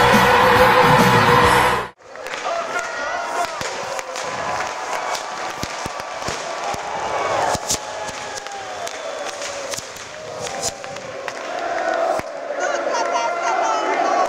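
Intro music cuts off sharply about two seconds in, giving way to a large stadium crowd cheering and singing, with a few sharp bangs through the noise.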